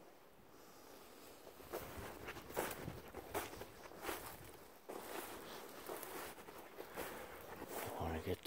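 Footsteps in snow: an uneven series of steps beginning about two seconds in.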